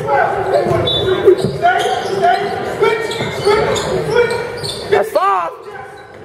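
A basketball being dribbled on a hardwood gym floor under a crowd's chatter, echoing in a large gym, with a few short rising-and-falling sneaker squeaks about five seconds in.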